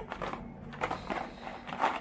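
Faint crackles and light taps from a box of coffee capsules being handled.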